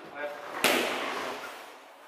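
A single strike of a boxing glove on a focus mitt about half a second in: one sharp smack that rings on and fades in the reverberant hall.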